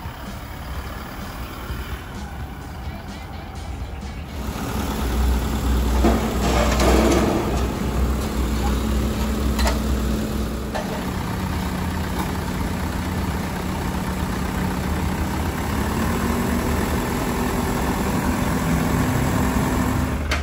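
Flatbed tow truck's engine running, a low rumble that grows louder about four seconds in, with background music over it.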